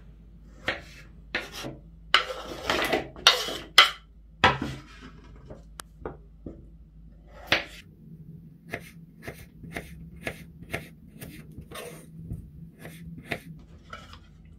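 Kitchen knife slicing radishes into half-rings on a wooden cutting board, each stroke a short tap of the blade through the radish onto the board. The strokes come unevenly at first, then settle into a steady run of about two a second in the second half.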